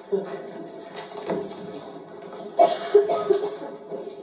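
Play audio heard from the audience: background music with indistinct voices, and two sudden loud sounds about half a second apart near the end.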